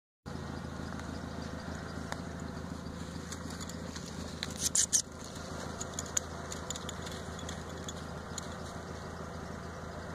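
Over a steady low hum, a coyote caught in a foothold trap pulls against it, and the steel trap and its chain clink sharply a few times, loudest about halfway through.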